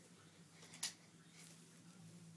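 Near silence: room tone with a faint steady hum and one brief soft click a little under a second in.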